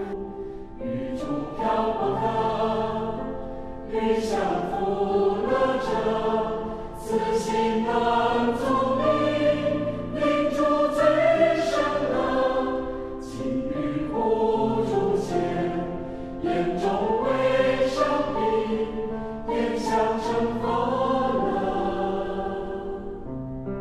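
Background music: a choir singing slow phrases of long held notes over a steady low accompaniment.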